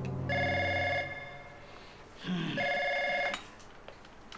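Telephone ringing twice, each ring a warbling trill of under a second, the two rings about two seconds apart.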